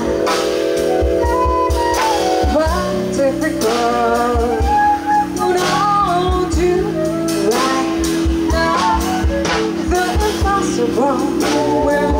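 A live jazz band plays: a woman sings a slow melody into a microphone over electric bass, drums and flute.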